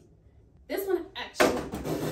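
A woman's voice in a short, murmured utterance, followed by a louder noisy rush of under a second.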